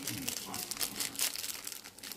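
Small clear plastic bag crinkling in the fingers as it is handled, a run of irregular crackles.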